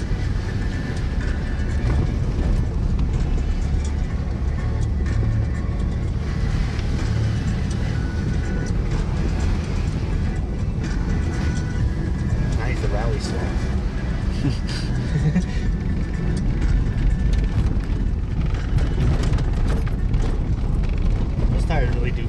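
Steady low engine and tyre rumble heard inside a four-wheel-drive vehicle's cabin as it drives along a snowy dirt track.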